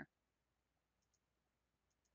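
Near silence with faint computer mouse clicks: a quick pair about a second in and one more near the end.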